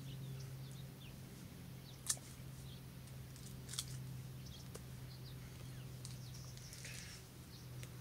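Palestinian sweet lime being peeled by hand, the rind tearing quietly, with two sharp snaps about two and four seconds in, over a steady low hum.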